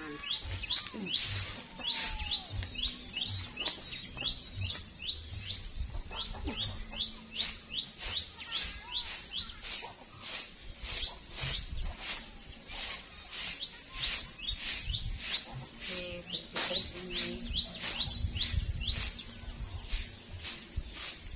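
A broom sweeping dirt, grass and dry leaves in short scratchy strokes, about two a second once the sweeping gets going, under a bird repeating a short falling chirp many times over.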